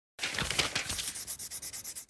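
A rapid run of scratchy rubbing strokes on paper, like quick scribbling, used as an intro sound effect. It starts abruptly and grows fainter toward the end.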